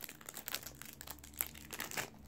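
Trading-card packet wrapper crinkling and crackling in irregular sharp bursts as it is torn open and the cards are pulled out by hand.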